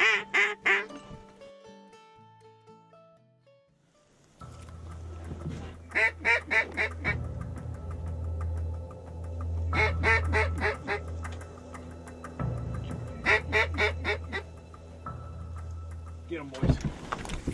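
Mallard quacking in short runs of five or six quacks: one run trailing off at the start, then runs about six, ten and thirteen seconds in. A low steady music bed starts a few seconds in.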